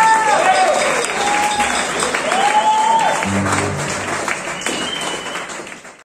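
Small audience applauding and cheering at the end of a song, with several whoops over the clapping and a man's voice about three seconds in; it all fades out at the very end.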